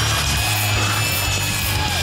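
Steady mechanical sliding, grinding noise of a TV graphic-transition sound effect, over background music with a steady bass.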